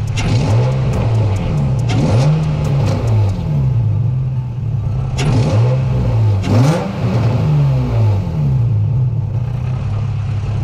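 2003 Infiniti G35's 3.5-litre V6 with an Injen cold air intake, heard from the front, idling and blipped about six times, each rev rising quickly and dropping back to idle. The owner suspects the engine has a vacuum leak.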